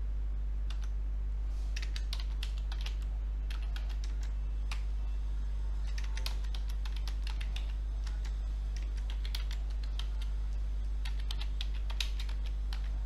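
Computer keyboard being typed on in short bursts of keystrokes with pauses between, over a steady low hum.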